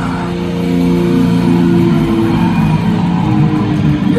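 Live hardcore punk band playing a guitar-led passage: loud electric guitars and bass hold chords that change about every second, with no singing in this stretch.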